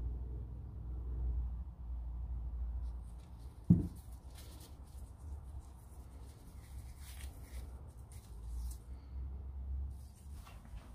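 Quiet handling sounds over a low steady rumble: one sharp knock a little under four seconds in, then faint soft rustling as gloved fingers work oil into a small foam air-filter pre-filter.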